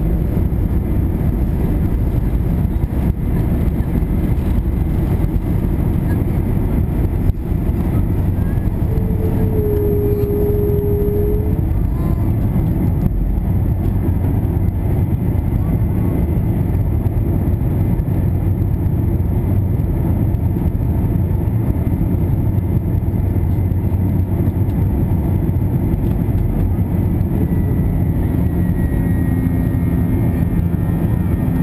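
Airbus A321 jet engines at takeoff thrust heard from inside the cabin over the wing: a loud, steady, low-heavy noise through the takeoff roll, lift-off and climb-out, with a single knock about seven seconds in.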